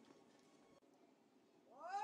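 Near silence: quiet outdoor tennis-court ambience. Near the end a high, rising wail begins.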